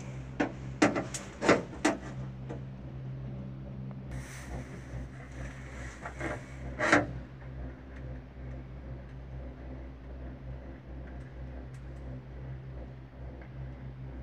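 Inside a moving Girak six-seater gondola cabin: a steady low hum, with a few sharp knocks and rattles in the first two seconds and one louder knock about seven seconds in.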